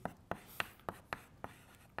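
Chalk writing on a blackboard: a quick string of short, sharp taps and scrapes as each stroke of a formula is put down.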